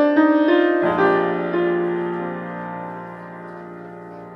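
Grand piano played solo in a jazz ballad: a few quick notes, then a low chord about a second in, left to ring and fade away.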